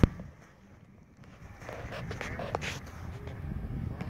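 Wind buffeting the microphone in uneven gusts, a low rumble that builds after the first second. There is a sharp click at the very start and faint voices about two seconds in.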